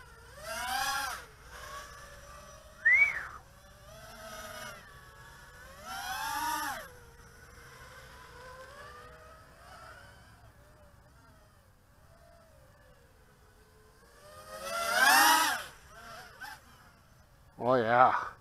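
Eachine Wizard X220 racing quadcopter's brushless motors and propellers whining in flight, the pitch rising and falling in swells with the throttle. The sound fades while the quad is far off, and the loudest, sharply rising burst comes about 15 s in.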